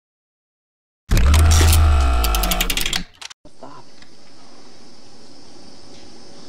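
A loud burst of about two seconds, with heavy bass and layered tones, ending in a rapid rattle of clicks. After a short break it gives way to the steady hiss of an old home-video recording.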